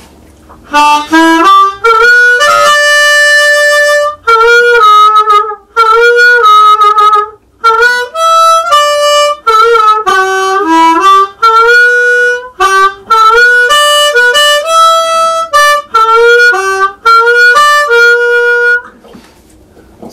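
Harmonica played through a Superlux D112 microphone into a Honking Tom tweed-style amp fitted with an 8-inch Celestion speaker: short, loud melodic phrases of held and bent notes with brief pauses between them, starting about a second in.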